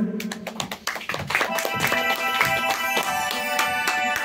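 Instrumental backing track starting the song's introduction: a few sharp clicks in the first second, then held chords that settle in from about a second in.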